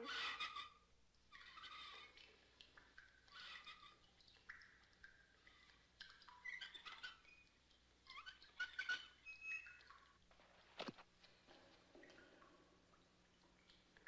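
Quiet cartoon sound effects of a rope and wooden bucket being lowered: faint, scattered creaks and squeaks. Near the end there is a single sharp falling swoop.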